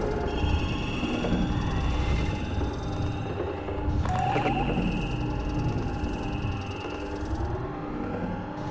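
Dark electronic intro soundtrack: a low rumble under held high tones, with a sudden sweeping hit about four seconds in.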